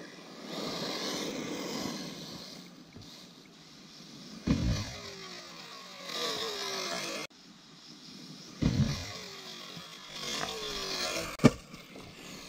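A 6S brushless-powered RC buggy with a 2250kv motor running on gravel and grass: rough tyre-and-gravel noise, then the electric motor's whine falling in pitch twice as it slows. Two heavy thuds come about halfway through and again a few seconds later, and a sharp knock, the loudest sound, comes near the end.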